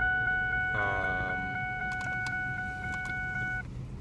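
A car's electronic warning chime: a steady multi-pitched tone with quick even pulses that cuts off suddenly about three and a half seconds in. A low rumble of the idling car sits under it, and there is a brief vocal sound about a second in.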